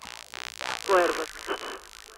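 Steady hiss of a worn videotape recording, starting with the snowy, noisy picture, under a man's voice speaking about a second in.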